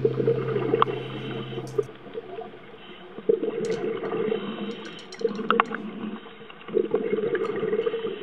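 Underwater sound picked up by a submerged camera: bursts of bubbling, gurgling water every few seconds, with scattered sharp clicks. The tail of a music track fades out in the first two seconds.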